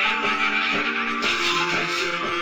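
Guitar-driven rock music: reverb-washed electric guitars over a steady drum beat.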